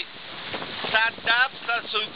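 A man talking in short phrases over a steady rush of wind and water aboard a fast-moving racing sailboat, with wind buffeting the microphone.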